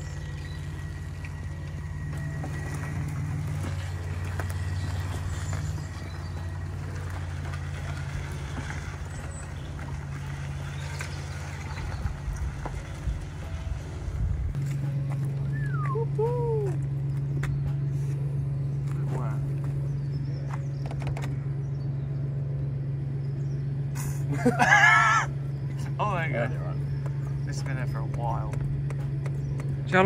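BMW M5's S38 straight-six idling steadily after six years sat, its low idle note changing about halfway through. A short burst of voice comes near the end.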